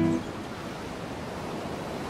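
Steady wash of sea waves on the shore, after a held music chord cuts off at the very start.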